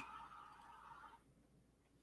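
Near silence: faint room tone, with a soft hiss that fades out about a second in.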